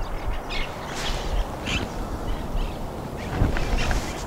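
2019 BMW X1's power tailgate opening under its motor after a press on the key fob, over outdoor rumble with a few short bird chirps.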